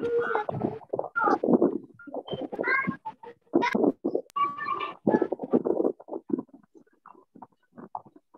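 A person's voice coming over a video-call link, choppy and distorted so the words don't come through, breaking into short fragments after about six seconds: the sign of a poor connection.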